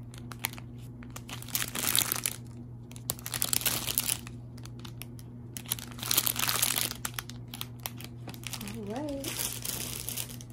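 Crinkling plastic bag packaging, a clear bag stuffed with small bags of diamond painting drills, handled in about four bursts.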